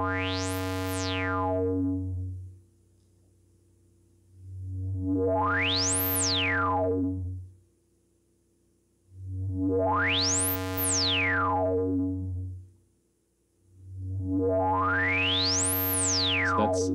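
Four sustained low synthesizer notes, each about three seconds long, played through a Tenderfoot Electronics SVF-1 state-variable filter with its resonance near full, in the 'more polite' resonance mode and without drive. In each note the cutoff is swept by hand, so a sharp resonant peak glides up to the very top and back down again.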